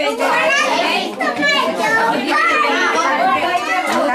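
Many high-pitched voices chattering and calling over one another, children's voices among them, in a crowded room.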